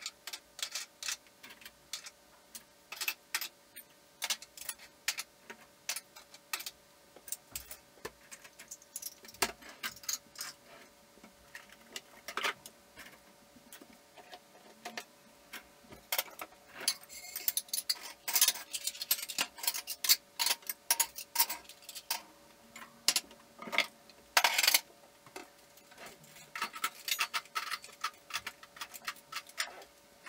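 Dishes, glasses and cutlery clinking and knocking as a dishwasher is unloaded and things are stacked into cabinets: a long run of sharp clinks, busier in the second half.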